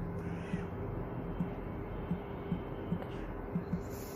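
Steady low background hum with soft, irregular low thumps, a few every couple of seconds.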